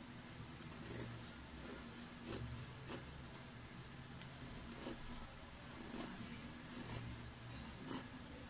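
Scissors cutting through a paper pattern pinned to fabric: faint, irregular snips about a second apart as the blades work along a curved line.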